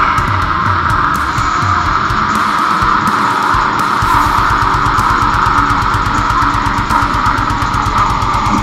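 Heavy metal music: distorted electric guitar holding a sustained, thick sound over drums, with a fast, even drum beat settling in about halfway through.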